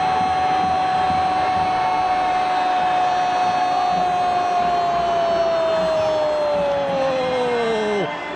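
Brazilian TV football commentator's long goal cry, a single 'Gooool' held on one note for about eight seconds and sinking in pitch near the end as his breath runs out.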